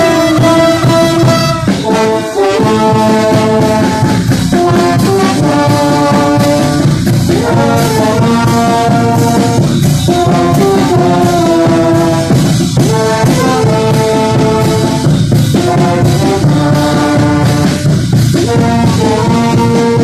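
Live brass band, with trombones most prominent, playing a dance tune loudly and without a break, recorded close to the players.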